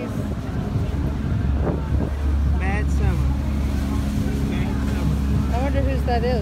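Steady low rumble of a cruise ship under way, swelling a little about two seconds in.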